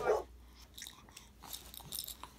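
A laugh cut off at the very start, then a quiet room with faint scattered small clicks and rustles from the baby stirring on the play mat.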